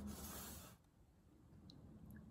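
Near silence: faint room tone, with a soft rustling noise that stops under a second in as the metal pouring pitcher is taken up.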